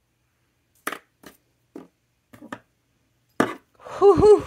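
A glass dip pen clinking and knocking: about five short, light taps spread over a few seconds, the last the loudest, as the nearly dropped pen is caught and laid on its glass pen rest.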